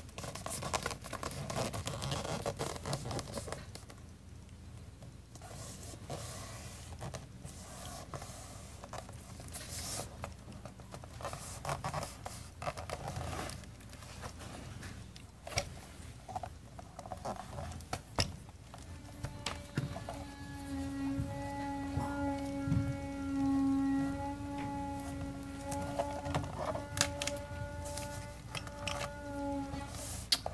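Paper rustling and scraping as decoupaged papers are handled and smoothed by hand. About two-thirds of the way in, a steady machine hum with a clear pitch starts and holds to the end, louder than the handling; it comes from the work crew installing new gutters on the house.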